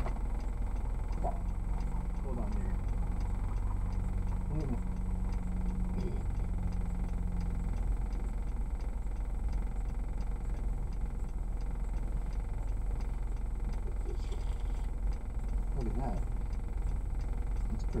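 Car engine idling while stopped, a steady low rumble, with faint voices over it.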